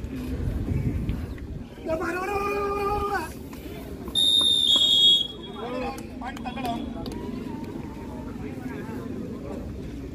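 Referee's whistle blown once in a shrill, steady blast of about a second, some four seconds in. It is the loudest sound, over crowd voices and shouting, and comes as a raid ends in a tackle.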